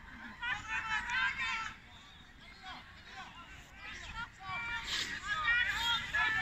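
Distant shouting and calling voices of players and spectators across an open field, in two spells with a quieter lull between them.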